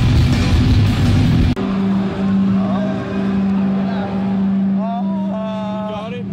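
Loud live rock band music cuts off abruptly about a second and a half in. A steady low hum and a man's drawn-out, wavering vocal wails follow, like whale noises, rising and held toward the end.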